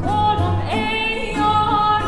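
A woman singing a traditional Persian love song in Farsi, holding long notes that step upward twice with a small ornamental turn, over an ensemble accompaniment with ouds and a low bass line.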